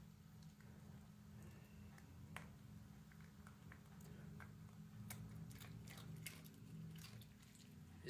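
Maltese dog chewing pieces of a peanut butter cookie: faint, irregular small clicks and crunches, coming thickest between about five and six and a half seconds in.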